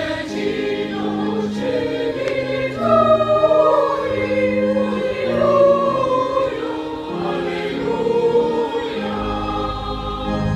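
Boys' choir singing a sacred piece in a church, the voices moving over steady held organ chords. The organ's deep bass notes drop away as the choir sings and come back near the end.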